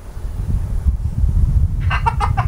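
Wind buffeting the camera's microphone: a loud, low, gusting rumble that sets in about a third of a second in and runs on.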